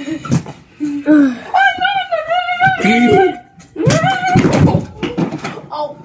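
A child laughing hard, with long high-pitched squealing stretches of laughter about a second and a half in and again around four seconds in.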